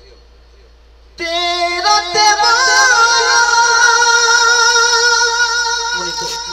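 A male voice singing one long, held note through a PA system with heavy echo. It starts suddenly about a second in, after a quiet pause, and stays loud with a slight waver.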